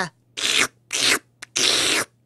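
Cattle drinking water, heard as a series of short noisy slurps about half a second apart, with a brief click between the last two.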